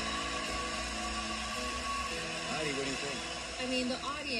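Studio audience applauding and cheering over sustained background music, at a steady level. A voice starts speaking in the last second and a half.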